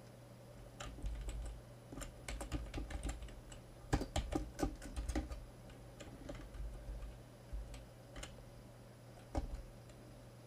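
Computer keyboard typing in irregular bursts of keystrokes, densest and loudest in the middle, thinning to a few single key presses near the end.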